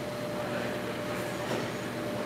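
Steady mechanical hum of truck-wash bay equipment, with a constant tone over a hiss, and a brief swell about one and a half seconds in.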